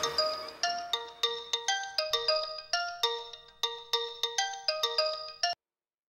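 Mobile phone ringtone: a melody of short ringing notes, about two or three a second, that cuts off suddenly about five and a half seconds in as the call is answered.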